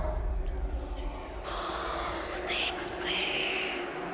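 Eerie horror sound-effect transition: a low drone, then from about a second and a half in a breathy, whispery hiss that carries on to the end.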